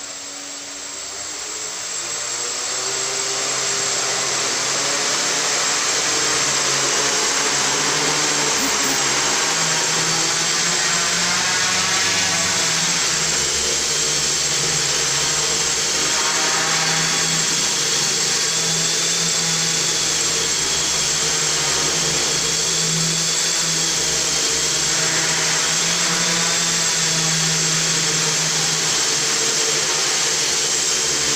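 F450 quadcopter's four 1000Kv brushless motors and propellers spinning up over the first few seconds as it lifts off, then a steady hover whine whose pitch wavers slightly as the motors change speed.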